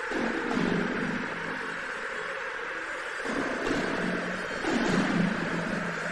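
Steady hiss of a fighter-jet cockpit intercom recording, with muffled low voice sounds from the aircrew at the start and again from about three seconds in.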